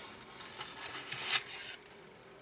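Faint rustling of paper and packaging being handled, with a few short scratchy rustles in the middle.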